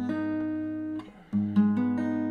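Steel-string acoustic guitar fingerpicking an arpeggiated G-sharp minor barre chord, its notes ringing together and slowly fading. About a second and a quarter in, a fresh arpeggio starts, its notes plucked one after another.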